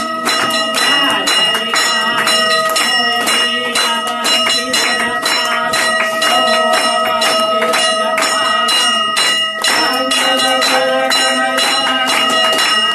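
Brass temple bell rung continuously and rapidly for the aarti, its ringing tones held steady under sharp strikes about three a second, mixed with rhythmic hand-clapping and voices.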